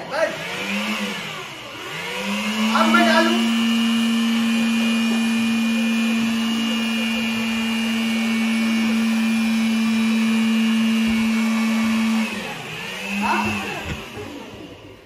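Handheld electric air blower motor running with a steady whine, blowing air up through a funnel to hold a ball aloft. It gives a short burst about half a second in, spins up about two seconds in, runs steadily for about ten seconds, shuts off, and gives one more short burst near the end.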